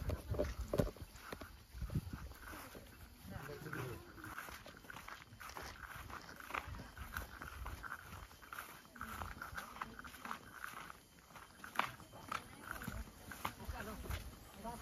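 Quiet outdoor sound: soft footsteps through long grass with faint, scattered short calls and voices in the distance.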